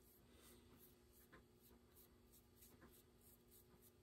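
Near silence: faint strokes of a paintbrush laying acrylic paint on a carved wooden bird, over a low steady hum.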